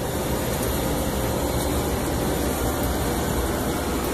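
Running rooftop air-conditioning equipment: a steady machine noise, a low hum under an even rush of moving air, with a faint steady whine.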